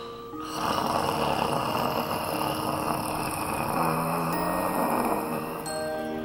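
A man snoring loudly while asleep, setting in about half a second in and running on for about five seconds, over light background music with bell-like notes.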